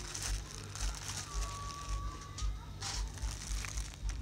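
Clear plastic bag crinkling and rustling as it is handled, in irregular bursts with a sharper crackle about three seconds in. A faint thin steady tone sounds briefly in the background about a second in.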